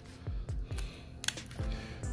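Kitchen shears snipping through the hard shell of a raw lobster tail, a few crisp clicks with one sharp snap a little past halfway, over background music with a steady beat.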